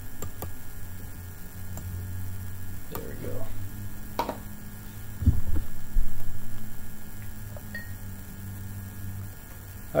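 A few mouse clicks at the start, a knock about five seconds in as the glass and bottle are handled, then beer pouring from a 12-ounce glass bottle into a pint glass, over a steady electrical hum.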